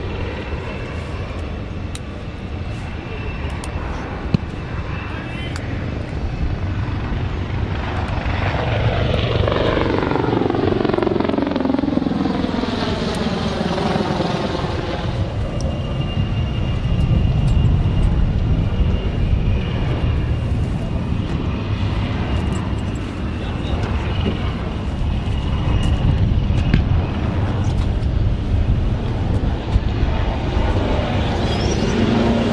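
Helicopter flying past overhead, its engine and rotor pitch falling as it goes by, loudest about ten to fifteen seconds in. A steady low rumble of aircraft noise lies underneath throughout.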